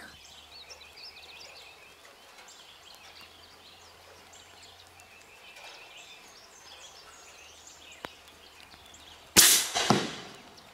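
Faint bird calls over a quiet river, then about nine seconds in a single loud air rifle shot: a sudden crack that fades out over about half a second.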